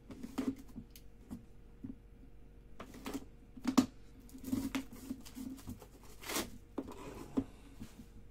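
A small cardboard trading-card box being handled and turned over in the hands, then set on the table: scattered taps, rustles and scrapes of cardboard. The loudest is a sharp knock a little under four seconds in, and a longer rasping slide comes about six seconds in.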